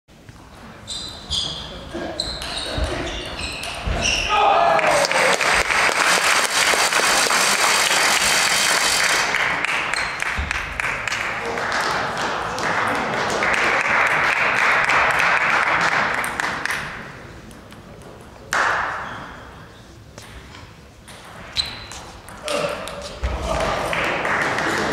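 Table tennis ball clicking off bats and table in a short rally, then a player's shout and loud crowd cheering and clapping for about twelve seconds that fades away. A few ball taps near the end.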